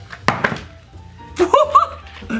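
Two sharp plastic clacks close together near the start from the toy robot's claw arm and the plastic treasure block being crushed, then a short wavering, voice-like pitched sound near the end.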